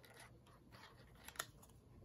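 Near silence: faint handling of paper and a squeeze glue bottle, with one small sharp click about one and a half seconds in.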